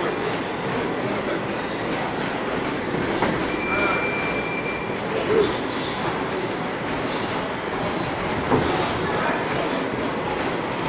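Steady, dense din of a busy boxing gym, broken by a few sharp knocks and a brief high whine about four seconds in.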